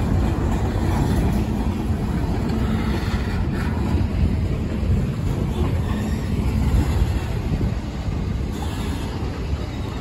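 Freight train's covered hopper cars rolling past: a steady low rumble of steel wheels on the rails.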